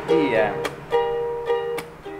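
Ukulele strummed in a down-up-tap pattern: ringing chord strums with a sharp percussive tap on the strings, twice.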